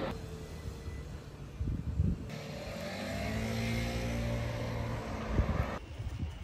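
A motor vehicle's engine passing by in the street, a steady drone through the middle seconds, with a few low knocks before it.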